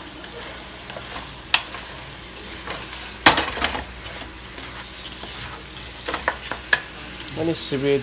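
Pork pieces sizzling in a wok while a wooden spatula stirs them, scraping and knocking against the pan; the loudest knock comes about three seconds in, and a quick run of knocks near the end.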